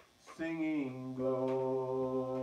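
A man singing a slow hymn unaccompanied. After a brief breath pause, he comes in about half a second in and draws out one long held note.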